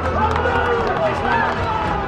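Voices calling out on a football pitch, over a steady low rumble.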